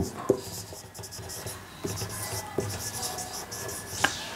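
Marker pen writing on a whiteboard: a run of short, dry scratching strokes as words are written, with a few light clicks.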